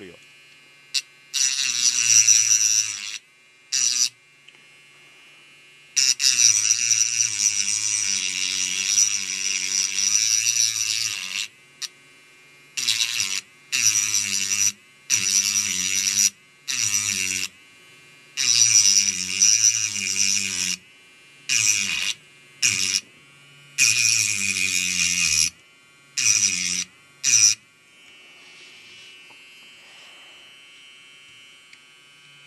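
Pen-style mini rotary tool (mini Dremel) cutting into the metal RF shield of a phone motherboard, run in about a dozen short bursts of half a second to five seconds. Each burst is a high grinding whine over a motor hum whose pitch wavers.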